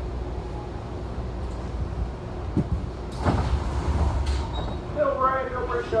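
Inside a BART C1 rapid-transit car: a low rumble as the train runs slowly, a sharp click about two and a half seconds in, then two short hissing bursts. A public-address voice starts near the end.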